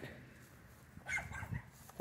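A dog barking faintly a couple of times about a second in, over a quiet outdoor background.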